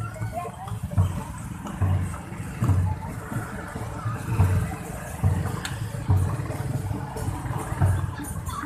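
Deep drum thumps on a steady beat, a little more than one a second, over the running of several small motor scooters moving at walking pace close by, with crowd chatter.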